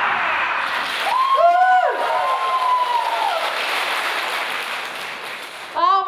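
Audience applause at the end of a choir performance, fading away over about five seconds, with one long drawn-out call from the crowd over it from about a second in.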